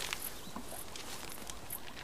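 Soft rustling and light crackling of dry twigs as a desert elephant's trunk plucks shoots from a shrub, with a few scattered small snaps.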